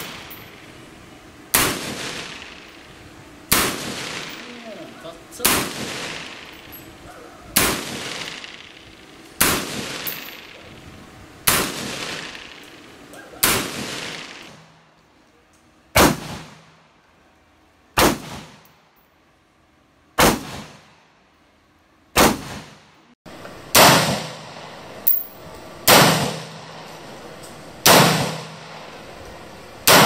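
M4 carbine (5.56 mm) fired in slow, deliberate single shots, about one every two seconds, some fifteen in all. Each shot is a sharp crack with an echoing tail.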